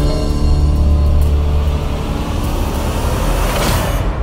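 Dramatic background score: a deep, sustained bass drone under held tones, with a rising swell that builds toward the end and then cuts off.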